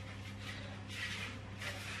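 Soft rustling of hands pressing and shaping a ball of bread dough on parchment paper in a baking tray, twice, over a steady low hum.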